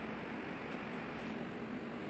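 Steady background hiss with no distinct events: room tone.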